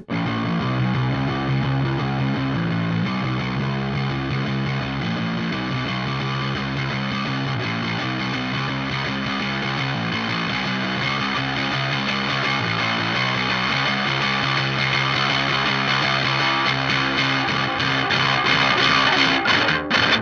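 Electric bass played through a WMD Goldilocks Planet distortion pedal switched to its symmetrical diode-clipping mode: a steady, sustained distorted bass line, thick and gritty with overtones.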